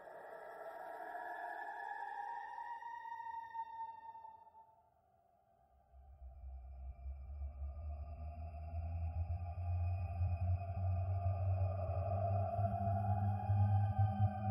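Creepy horror ambience: sustained tones that glide slowly in pitch fade out about four seconds in, leaving a brief near-silence. Then a low droning hum comes in with higher wavering tones above it, growing louder toward the end.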